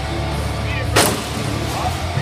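A combat robot impact in the arena: one sharp, loud bang about a second in, with a short ringing after.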